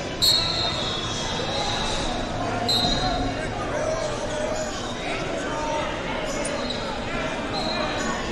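Sports-hall hubbub of voices with short, shrill referee whistle blasts from the wrestling mats: a loud one about a quarter second in, another near three seconds, and a fainter one near the end.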